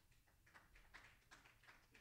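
Near silence: room tone with a few faint, soft footsteps.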